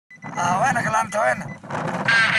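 A man's voice talking into a vehicle's handheld two-way radio microphone, heard inside the car's cabin.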